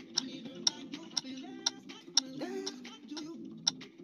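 A workout app's countdown timer ticking steadily, about two ticks a second, during the rest break before the next exercise.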